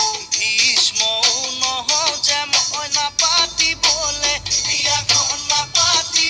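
Assamese Bihu film song: a sung melody over a fast, steady percussion beat of about four strokes a second.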